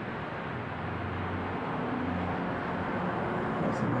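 Steady background noise with a faint low hum and no distinct events.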